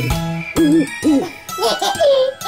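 Cartoon owl hooting, a few short arching 'hoo' calls that rise and fall in pitch, over light children's song music.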